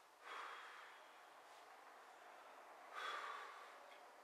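A man's forceful breaths during exercise: two hissing exhalations, one just after the start and one about three seconds in, each fading quickly.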